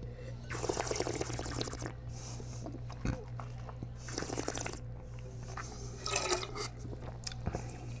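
A noisy sip of liquid taken from a glass, a light knock about three seconds in, then liquid spat into a stainless steel spit bucket about four seconds in, all over a steady low hum.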